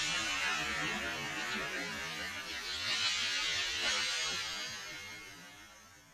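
Steady outdoor background hiss with no distinct events, fading out over the last two seconds.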